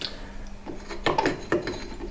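A steel locating pin being worked out of a crank-pin hole in a locomotive wheel on a slotting jig. It makes a series of short metal-on-metal scrapes and clicks.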